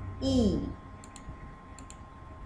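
Computer mouse clicking twice, about three-quarters of a second apart, each a sharp double tick of button press and release, as a slideshow is advanced.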